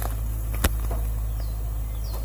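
A steady low hum, with one sharp click about two-thirds of a second in.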